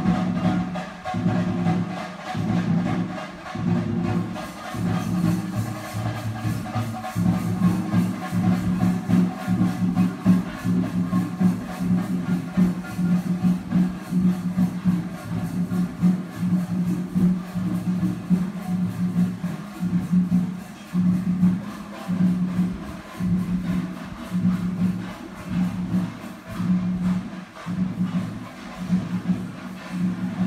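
Festival percussion music: drums played in a fast, steady rhythm that carries on without a break.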